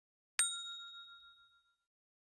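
A single bell ding from a notification-bell sound effect: one bright chime about half a second in, ringing out and fading over about a second and a half.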